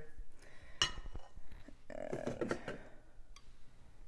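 Quiet kitchen handling: a sharp clink just under a second in and a few softer knocks and bumps as a stand mixer's ceramic bowl is worked free and lifted off its base.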